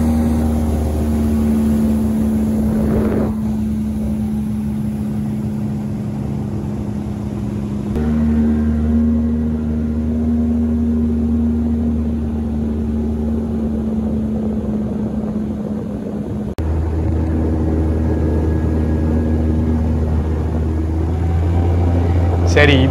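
Outboard motor of a small aluminium boat running steadily under way, with water rushing past the hull. The engine note breaks off abruptly twice and resumes at a slightly different pitch.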